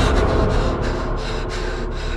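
A man panting hard in quick, gasping breaths, about two or three a second, over a low steady drone.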